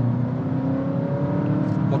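Honda ZR-V e:HEV's 2.0-litre four-cylinder petrol engine revving under full-throttle kickdown in Sport mode, heard from inside the cabin. Its pitch climbs steadily as the car accelerates, and it sounds good.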